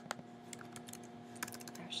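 Typing on a computer keyboard: a few scattered keystrokes with a quick run of keys about one and a half seconds in, over a faint steady hum.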